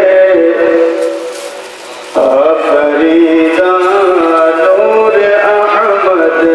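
A man's voice singing a slow, melodic chant into a microphone, holding long notes that bend slowly. It fades out about a second in and comes back with a rising note a little after two seconds.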